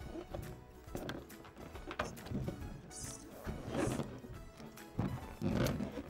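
Background music, with short rubbing noises from a rubber balloon being inflated and handled, about four times.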